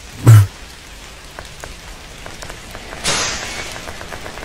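A heavy low thump just after the start, then scattered faint ticks and a brief rush of hiss about three seconds in.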